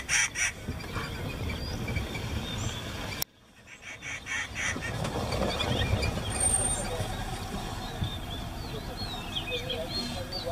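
Outdoor ambience with steady low rumble, broken by a sudden cut about three seconds in. A rhythmic rasping pulse, about six or seven beats a second, sounds at the start and again just after the cut, and faint bird chirps come near the end.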